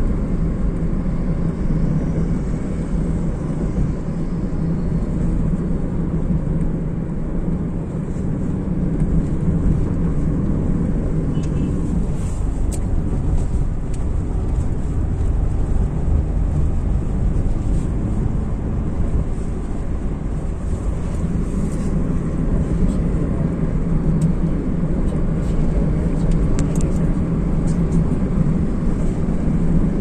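Car driving along a highway, with a steady low rumble of engine and tyre noise that barely changes.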